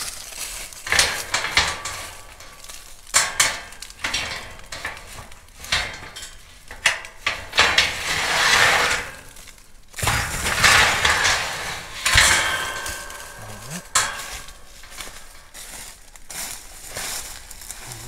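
Steel hog trap door and wire panels clanking and rattling as the door is lifted and handled, with repeated metal knocks and rustling in dry leaves.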